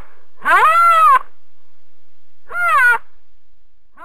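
Animal calls played as a sound effect: drawn-out high cries, each rising and then falling in pitch, repeating about every two seconds.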